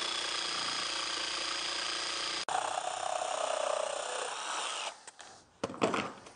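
Bosch jigsaw running as it cuts waste out of a wooden block, a steady buzzing saw noise with a motor whine. About two and a half seconds in it breaks off sharply and comes back with a changed pitch, then stops near five seconds, followed by a few knocks.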